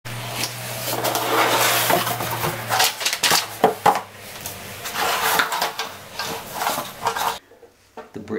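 Handling noise from a banjolele and its cardboard box: rustling with several sharp knocks and metallic clinks. A low hum runs under the first few seconds, and the sound cuts off abruptly near the end.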